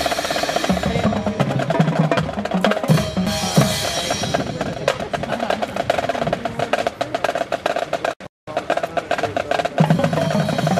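Marching band percussion (snare drums, bass drums and front-ensemble percussion) playing a fast, busy rhythmic passage. The sound cuts out completely for a moment about eight seconds in.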